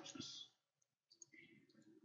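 Near silence with a few faint computer-mouse clicks from about a second in, made while dragging an audio volume point in the editor.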